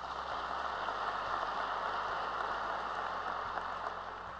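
Audience applauding, swelling in at the start and fading away near the end.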